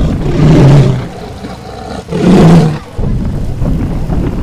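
Two loud dinosaur roar sound effects, each lasting about a second, one near the start and one about halfway through.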